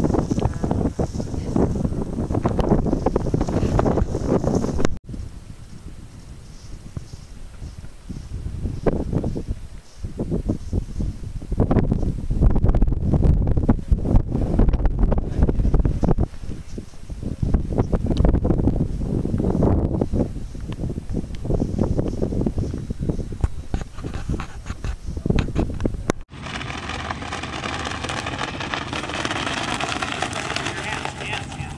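Wind buffeting the microphone in gusts that rise and fall, breaking off sharply twice. In the last few seconds a steady hum with several pitched tones runs under lighter wind.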